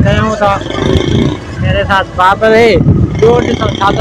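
A man talking close to the microphone, over a steady low outdoor rumble.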